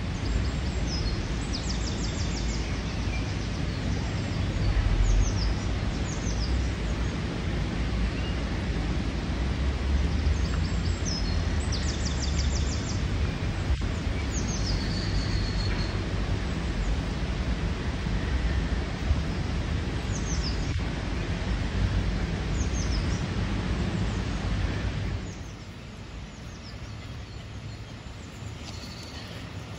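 Small birds singing, with short high chirps and a couple of rapid trills, over a steady rushing noise of a shallow stream and a low rumble. The whole sound drops in level near the end.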